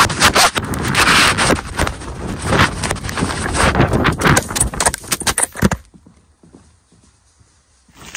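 Horse bolting at a fast gallop and bucking, heard through a jostled phone microphone: hoofbeats mixed with heavy handling knocks, rubbing and thumps. About six seconds in the noise stops abruptly and goes very quiet, as the dropped phone lies still.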